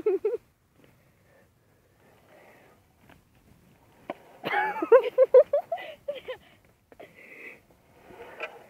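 Laughter: a run of short, breathy, pitched bursts, about three or four a second, starting about four and a half seconds in and lasting about two seconds.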